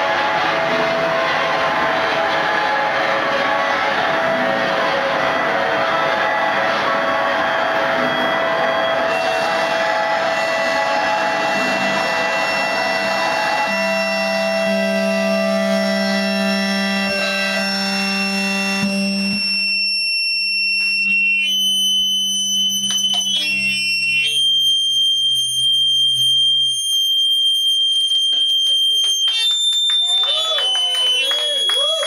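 Noise-rock guitars through effects units playing a dense wall of distorted noise that thins about halfway through into a few sustained droning tones. After about two-thirds of the way, only high steady tones remain, with brief pitch glides.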